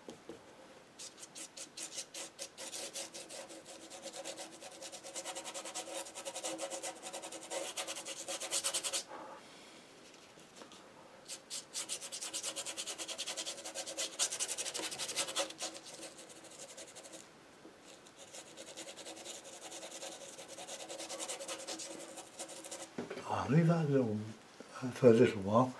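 Paintbrush scrubbing acrylic paint onto paper in quick back-and-forth strokes, in three runs separated by short pauses.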